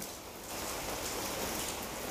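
A faint, steady hiss of background noise with no distinct events, growing slightly louder about half a second in.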